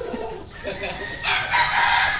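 Gamefowl rooster crowing, one long call starting a little past halfway.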